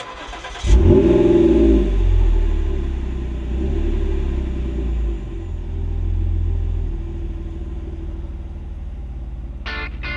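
Car engine starting with a quick rev that settles into a steady, deep idle rumble. Strummed guitar music comes in near the end.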